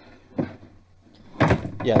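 A short pause between speakers with faint background hiss and a brief soft sound about half a second in, then a sudden thump about a second and a half in, just before a man says "Yeah".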